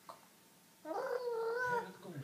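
Six-month-old baby vocalizing: one drawn-out, high-pitched coo about a second long, starting a little under halfway through.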